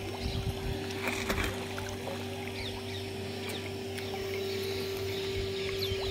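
A steady mechanical drone that holds one pitch throughout, over the wash of shallow river water at the bank, with a few faint high chirps.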